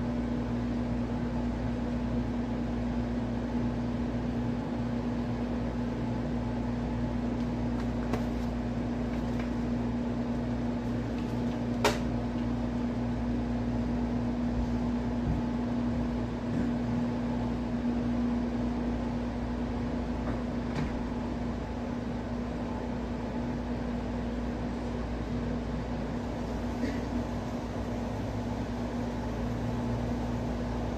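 A steady low mechanical hum with a constant tone over an even hiss, and one sharp click about twelve seconds in.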